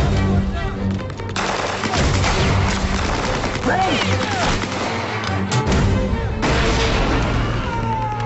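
Battle sound effects: rapid gunfire in dense stretches over a music score, the firing thinning out for about a second near the two-thirds mark before picking up again.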